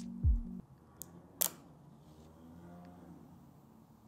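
Background music stops about half a second in. Then come faint crinkles and two small clicks, the second the louder, as the plastic protective film is peeled off the screen of a new Samsung Galaxy S24 Ultra. A sharper crackle comes right at the end.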